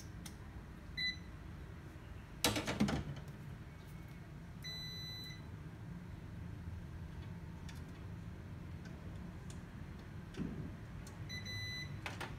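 Digital multimeter's continuity beeper sounding three times as its probes are put to a laser printer's power-supply board while the fuses are checked: a short beep about a second in, a longer one about five seconds in, and another near the end. Each beep signals continuity between the probe tips. A brief clatter of handling comes about two and a half seconds in.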